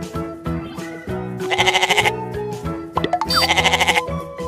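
Domestic goat bleating twice, each a wavering call of about half a second, about a second and a half in and again near the end, over cheerful background music.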